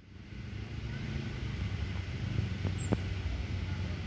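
Low rumble of distant motor traffic, growing slightly louder, with two faint ticks about three seconds in.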